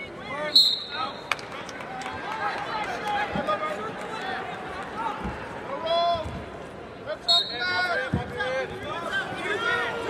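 Arena crowd and coaches shouting over a wrestling bout, with a short, shrill referee's whistle about half a second in, as the period starts from referee's position, and another about seven seconds in. A few dull thuds of bodies on the mat.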